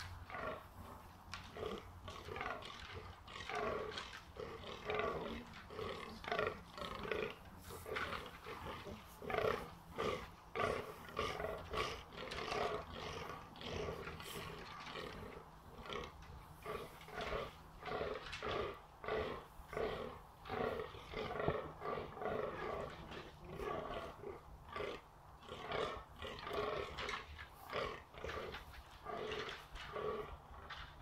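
Rutting fallow deer bucks groaning: a steady run of short, repeated belching grunts, about two or three a second, the rut call of bucks holding ground for does.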